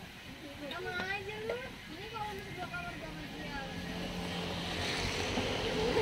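A motor vehicle's engine hum with rising hiss, growing louder through the second half, under people talking.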